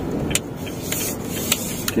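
Cabin sound of a 2018 Honda Brio 1.2 automatic moving slowly: steady low engine and tyre noise, with a light, even ticking about three times a second and a couple of sharper clicks.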